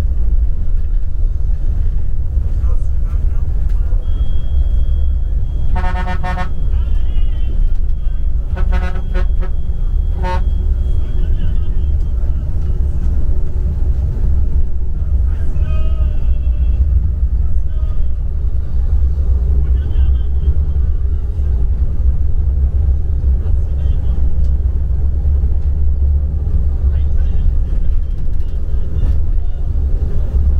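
Steady low rumble of a bus's engine and road noise heard from inside the cabin, with a vehicle horn tooting about six seconds in, then twice more, briefly, around nine and ten seconds.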